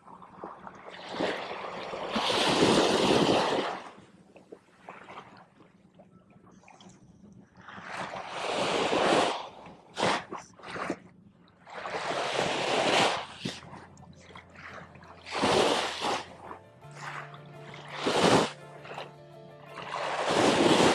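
Background music with low held notes, under repeated rushing swells of small surf washing up the sand, each lasting a second or two.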